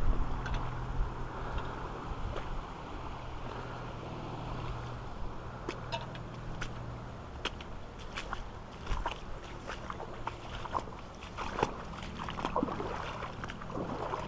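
Wellington boots wading through shallow floodwater on a path, irregular splashing steps over a steady rush of flowing floodwater.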